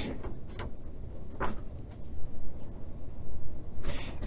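Paper instruction sheet being handled and slid about under a hand: soft, scattered rustles, the clearest about a second and a half in.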